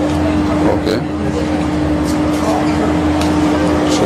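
Steady background noise with a constant hum and a low rumble, like traffic or a running motor. A stiff page of a wallpaper sample book is turned partway through, with a brief rustle or two.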